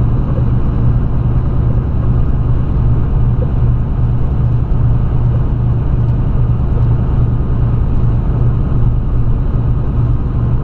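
Semi-truck's diesel engine and road noise while cruising at a steady speed: a constant low drone with no change in pitch.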